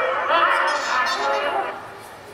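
The Angry Birds red-bird character answering in high-pitched, wavering, unintelligible bird-like chatter, which stops shortly before the end.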